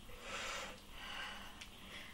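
A woman breathing hard from exertion mid-exercise: two soft, noisy breaths, the first about half a second long and the second shorter and fainter.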